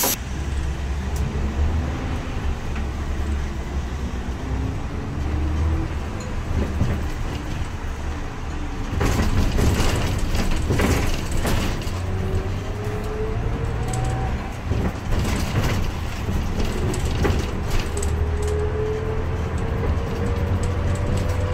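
Inside a city town bus: a steady low engine rumble, with a drivetrain whine that rises in pitch each time the bus pulls away and accelerates, several times over. From about nine seconds in it gets louder, with cabin rattles and knocks. A sharp click comes at the very start.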